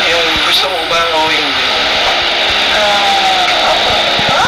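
People talking in a room, over a steady background hiss.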